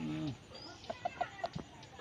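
Domestic chickens clucking: a short falling call at the very start, then a run of quick, short clucks about a second in.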